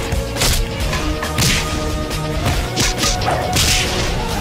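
Fight-scene sound effects: a series of swishing whooshes and hit impacts, about five in four seconds, over background music.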